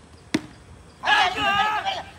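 A single sharp crack of a cricket bat striking the ball about a third of a second in, followed about a second in by a loud, high-pitched shout from a player.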